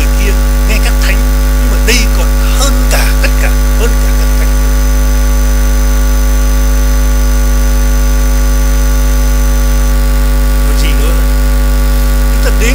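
Loud, steady electrical hum with a stack of buzzing overtones, typical of mains hum picked up by a recording or sound system.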